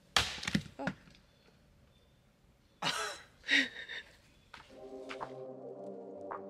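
Axe chopping firewood: a sharp chop near the start and another about three seconds in. Soft music comes in near the end.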